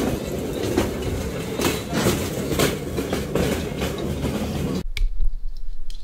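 Loud clattering background noise at an outdoor stall, with a heavier knock about once a second, cut off abruptly about five seconds in and giving way to quiet room tone with a low hum.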